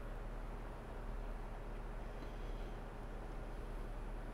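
Quiet room tone: a steady low hum and faint hiss, with no distinct sounds.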